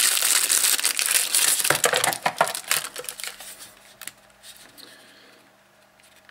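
Thin clear plastic bag crinkling and crackling as a remote control is unwrapped from it; the rustling dies away after about three seconds.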